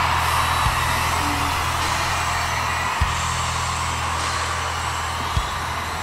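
Instrumental concert intro: a deep, sustained bass drone with a single heavy thump about every two and a half seconds, three in all. Under it runs a steady wash of arena crowd noise.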